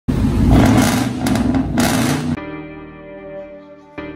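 Ford F-150 pickup's V8 revved hard through a loud open exhaust for about two seconds, then cut off suddenly. Soft intro music with piano follows.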